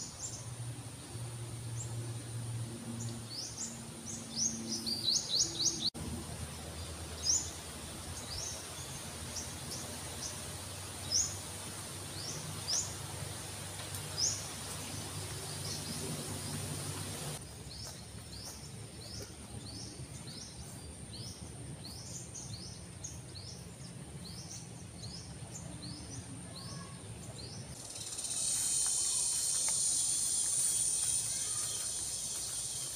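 Birds chirping in short, rapid, high calls over a steady high insect drone in a tropical forest. Near the end a louder, hissing insect buzz comes in.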